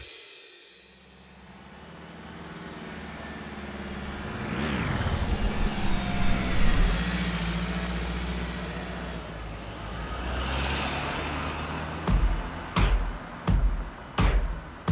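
A van's engine running as it drives up and past, with a rising wash of engine and tyre noise that peaks about six to seven seconds in. A short whoosh rising and falling in pitch comes about four to five seconds in. Music with a steady beat starts near the end.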